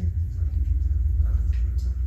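A steady low rumble with no speech over it.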